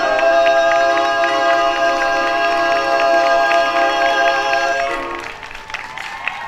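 Barbershop quartet singing in close a cappella harmony, holding a long final chord that stops about five seconds in.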